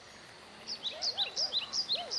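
A bird chirping repeatedly, short calls about three a second, starting just under a second in.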